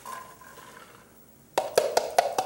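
Chopped onion sliding softly from a glass measuring cup into a stainless steel pot, then a quick run of five or six sharp knocks near the end as the glass cup is tapped against the pot to empty it.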